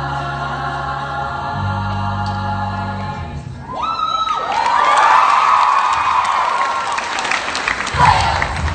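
A choir singing sustained chords over low held bass notes. About halfway through, the voices slide upward and break into whooping cheers with clapping.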